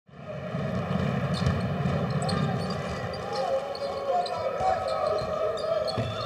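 Arena sound of a basketball game in progress: a ball being dribbled on a hardwood court, with crowd voices in a large indoor hall.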